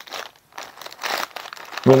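Grey plastic shipping mailer crinkling as it is slit open with a box cutter and a plastic packet is pulled out, in a few rustling bursts, the loudest about a second in.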